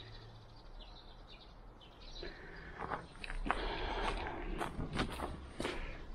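Footsteps on snow, starting about two seconds in and louder from about halfway.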